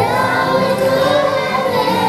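Children's choir singing a Hebrew song with instrumental accompaniment, the voices holding long notes.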